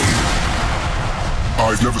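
Electro-house DJ mix at a breakdown: the drum beat drops out, leaving a fading noise wash over a held low bass note. A sampled spoken voice comes in near the end.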